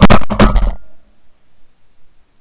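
A shotgun firing at very close range, picked up by a camera mounted on the gun: one loud blast right at the start, a cluster of sharp cracks that dies away within about three-quarters of a second.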